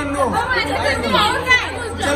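A group of people chattering, several voices talking over one another.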